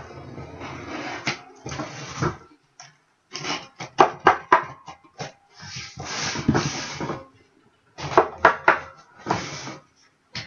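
Sealed cardboard case being slit open along its packing tape and handled: several stretches of scraping against the cardboard, with clusters of sharp knocks on the box between them and short gaps of quiet.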